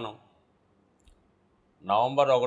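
A man's speech trails off, then a pause with one short, faint click about a second in, and speech resumes near the end.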